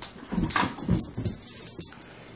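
Two Siberian huskies scuffling over a thrown ball, with short, irregular dog vocal noises and scrambling.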